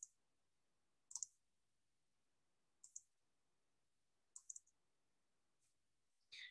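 Faint computer mouse clicks against near silence. They come singly and in quick pairs and a triple, a second or two apart.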